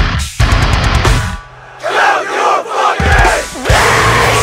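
Heavy metal band recording: distorted guitars and drums break off briefly to a low held bass note about a second and a half in. Shouted vocals follow, and the full band crashes back in near the end.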